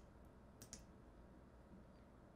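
Near silence: room tone with a faint computer mouse click a little under a second in.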